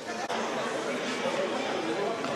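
Several people talking at once, a jumble of overlapping voices in a large indoor sports hall.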